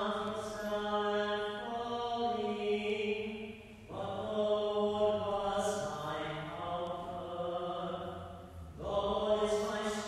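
Liturgical chant sung on long, held notes, in phrases of about four to five seconds with short breaths between them.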